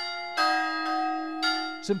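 Church bells ringing: two strokes about a second apart, each ringing on with clear steady tones.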